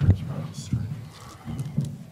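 Indistinct, muffled speech from an off-microphone questioner, with several short dull knocks from the table microphones being bumped.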